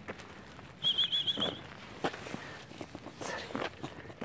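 A short, high warbling whistle, quickly trilled, about a second in, among scattered scuffs and light steps of puppies and a person on gravel.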